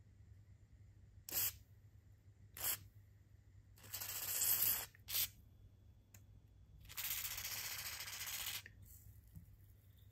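Aerosol spray can with a straw nozzle hissing in three short puffs and two longer sprays of about one and one and a half seconds, sending penetrating spray into a rusted joint of a cast-iron grinder to loosen a stuck part.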